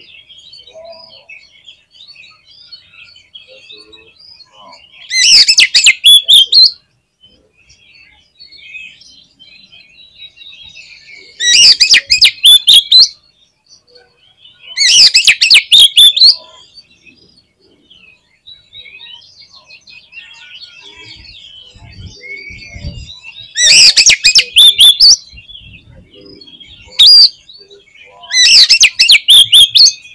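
Oriental magpie-robin (kacer) singing in full voice: loud one-to-two-second bursts of rapid, tightly packed notes, repeated several times, with quieter twittering in between.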